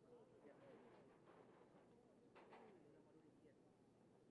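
Near silence with faint, distant shouting voices of players on an open field.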